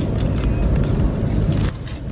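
Steady low rumble of engine and road noise inside a moving car's cabin, easing slightly near the end.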